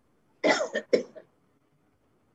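A person coughing twice in quick succession, about half a second in.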